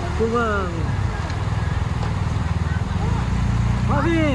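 BMW R 1250 GS boxer-twin motorcycle engines running steadily at low revs as the bikes ride slowly over grass, with voices calling out over them shortly after the start and again near the end.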